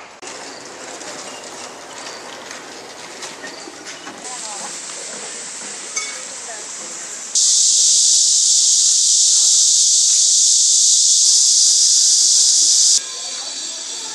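A loud, steady hiss that starts suddenly about halfway through, lasts about six seconds and cuts off just as suddenly, over background voices and bustle.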